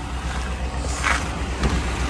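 GMC Sierra pickup's engine idling, a steady low rumble.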